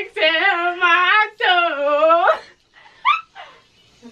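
Young women laughing hard in high-pitched, wavering bursts, the laughter breaking off a little past two seconds in, followed by a short rising squeak near three seconds.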